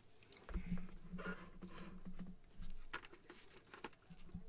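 Gloved hands handling and turning a plastic full-size football helmet: soft rubbing and crinkling with a few light clicks and knocks.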